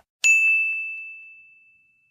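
Notification bell sound effect: a single bright ding that rings out and fades away over about a second and a half.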